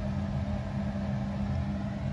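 A steady low mechanical hum with a constant droning tone, like a motor or fan running continuously.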